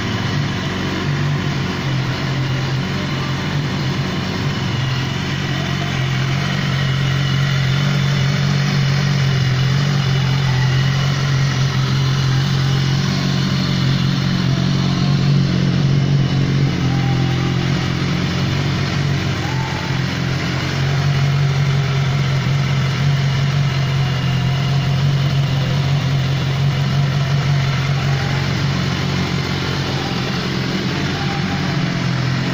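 BMW S1000RR inline-four engine idling steadily through its Scorpion aftermarket exhaust.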